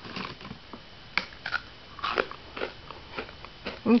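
A crunchy Sammy Snacks biscuit being bitten and chewed: irregular crunches roughly every half second.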